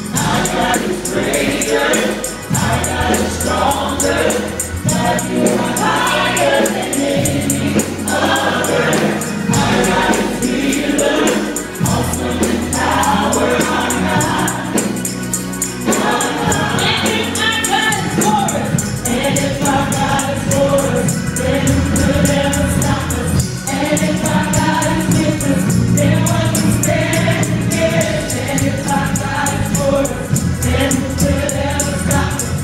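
A gospel praise team sings together into handheld microphones, with several voices in harmony over an instrumental backing. A sustained bass line changes note every couple of seconds.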